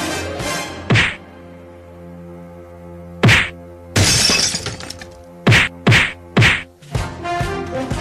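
Dramatic soundtrack music under dubbed fight sound effects: single punch-like whacks about one and three seconds in, a longer noisy burst around four seconds, then a quick run of four hits between about five and a half and seven seconds.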